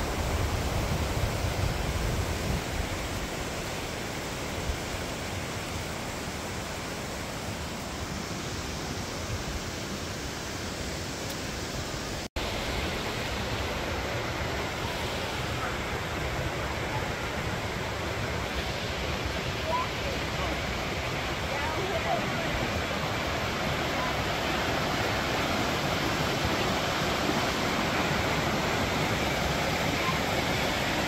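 Creek water rushing steadily over rocks and small cascades. The sound cuts out for an instant about twelve seconds in.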